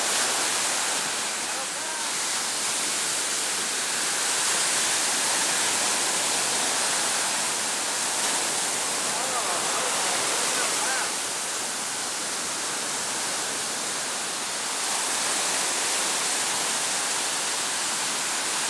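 Ocean surf breaking and washing up a sandy beach: a steady rushing wash that swells and eases gently as the waves come in.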